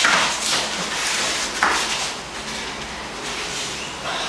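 Grapplers' cotton gis rustling and bodies scuffing and rolling on a foam mat, in a few noisy swishes, with a light thump about a second and a half in.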